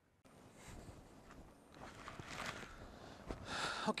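Faint outdoor background noise with soft, scattered rustles, growing louder a little before the end.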